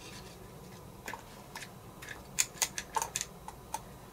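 Steel digital caliper being slid and set against a rubber-wrapped polymer pistol grip to measure its thickness: a scatter of light metallic clicks and ticks, starting about a second in and bunching together near the middle.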